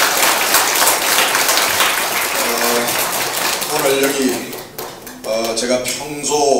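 Audience applauding in a hall, the clapping dying away about four seconds in while a man's voice begins speaking over its tail.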